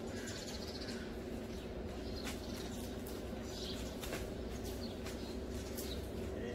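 Small birds chirping now and then over a steady low hum, with a few faint sharp ticks.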